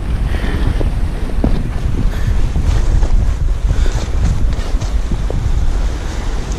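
Wind buffeting an action-camera microphone, a steady low rumble with a few faint knocks.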